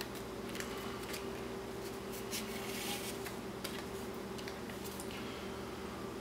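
Cardboard and plastic packaging being handled by hand: faint rubbing and small clicks, with a longer sliding rustle a little before the middle as a card sleeve is drawn out of its box.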